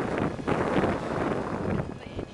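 Wind buffeting the microphone on a moving boat: a loud, irregular rush that starts abruptly and eases shortly before the end.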